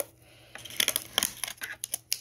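Light clicks and crinkles from a cut-off plastic water-bottle top being handled as a balloon is stretched over its neck, starting about half a second in.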